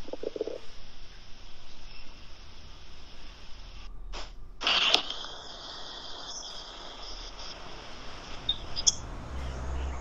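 Hiss and crackle from a remote caller's open video-call line while the phone is being handled. There is a short muffled murmur at the start, a brief dropout just before four seconds, and a loud burst of noise about five seconds in.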